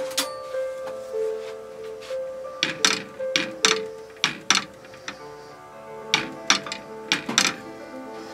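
A wooden spatula knocking and scraping against a frying pan, about a dozen sharp knocks, as a block of butter is pushed around to melt. Background music plays steadily underneath.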